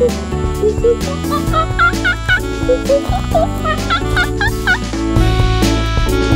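A man imitating a monkey: a run of short whooping hoots that swoop up and down in pitch, with a laugh near the end, over steady background music.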